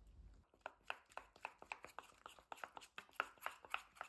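Metal spoon stirring a flour-and-water batter in a small stainless steel bowl, knocking against the bowl's side in a quick run of light clicks, about five a second, starting about half a second in.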